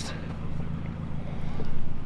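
Steady low outdoor rumble with a faint hiss, such as wind on the microphone or distant traffic. No clank of the weight plates stands out.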